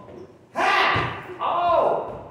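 Two loud shouted yells, one about half a second in and another about a second and a half in, each falling in pitch; the first starts with a sharp slam-like impact.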